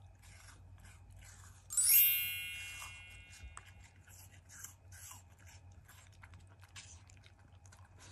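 Black Shiba Inu chewing apple pieces, a run of short, crisp crunches throughout. About two seconds in, a bright chime rings out and fades; it is the loudest sound.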